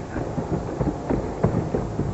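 Low rumbling with irregular knocks and clunks from a bare pickup-truck chassis being shaken on a test rig to simulate rough terrain.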